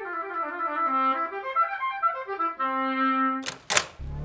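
Solo oboe playing a melodic phrase: a run of short notes winding down and back up, settling on a held low note. Two sharp knocks follow just before the end.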